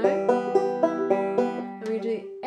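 Five-string resonator banjo fingerpicked through an E minor chord in a rolling picking pattern, single notes plucked about four a second and left ringing over one another.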